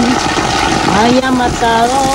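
Water gushing steadily from a pipe spout onto rocks and a bather below it, with a person's voice over it from about a second in.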